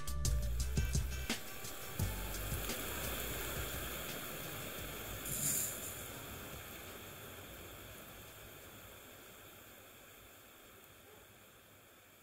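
Background music ends within the first second or two, leaving a steady hiss of water spraying from a pop-up sprinkler head that slowly fades away. A short, sharper hiss comes about halfway through.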